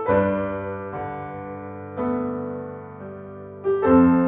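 Background music: slow piano chords, struck about once a second and each left to ring and fade.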